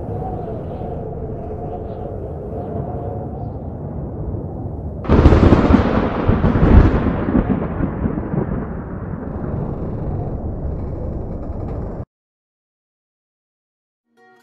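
Cinematic intro sound effect: a low, steady rumbling drone with a faint held tone, then a sudden loud boom about five seconds in that rumbles and slowly fades. It cuts off suddenly about two seconds before the end.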